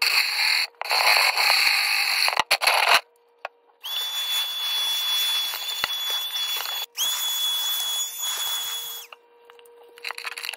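A cordless drill bores a hole through a kitchen cabinet's bottom panel, with a brief dip in its sound, and stops about three seconds in. About a second later a vacuum starts up with a steady high whine. It cuts out for a moment and then runs again until shortly before the end, picking up the sawdust.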